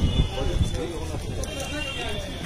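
Indistinct voices of several men talking as they walk, with a few low bumps in the first moments.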